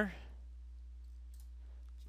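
A computer mouse button clicked once, faint and sharp, about a second and a half in, over a steady low hum in the recording.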